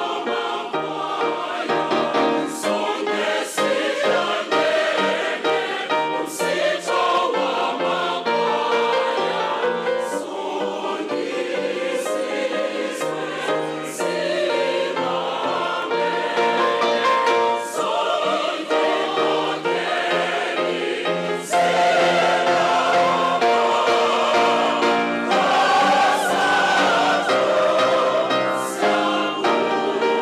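A large mixed choir of men and women singing in harmony, with sustained notes, growing louder about two-thirds of the way through.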